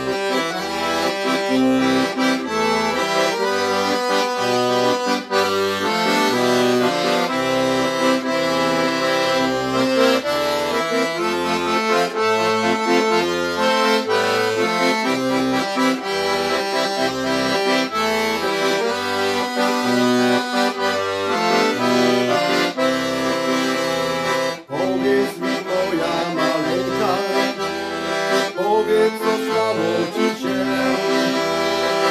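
Piano accordion playing a lively melody on the right-hand keys over a steady alternating bass-and-chord accompaniment from the left-hand buttons.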